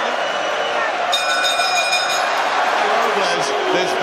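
Steady arena crowd noise, with the boxing ring bell struck about a second in and ringing for about a second, the signal that the round has ended.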